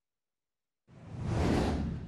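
Whoosh transition sound effect for an animated title card. It is silent for about the first second, then a rushing swell rises to a peak and fades away.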